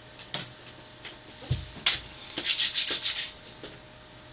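Handling noises: a few light clicks and a soft thump, then a quick run of about seven scratchy rubbing strokes lasting about a second.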